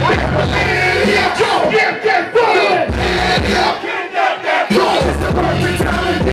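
Live hip-hop through a club sound system, with rappers shouting into microphones and a crowd shouting along. The bass beat cuts out twice for about a second each, leaving the voices on their own, then comes back.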